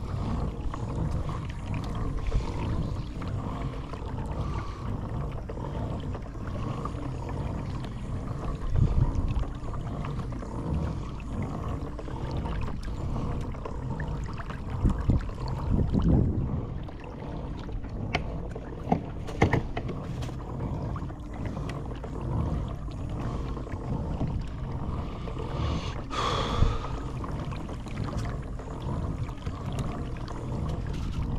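Sea water lapping against the plastic hull of a fishing kayak over a steady low rumble, with a few louder knocks around the middle.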